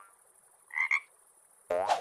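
A frog croaking twice: a short double croak just under a second in, then a longer, deeper croak near the end.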